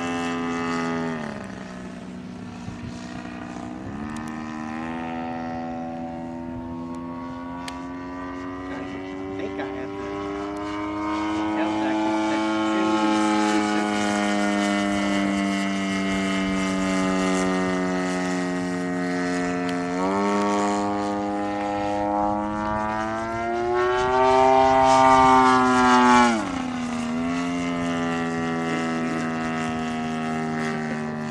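The 111cc gas engine and propeller of a large RC Extra 300L aerobatic plane in flight, rising and falling in pitch with the throttle. The pitch drops early on and climbs back, then eases down. Near the end it swells to its loudest and highest, then drops sharply.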